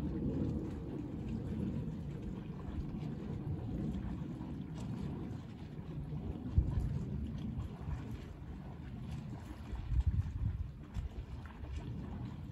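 Wind buffeting the microphone: a low, gusty rumble, with two stronger buffets about six and a half and ten seconds in.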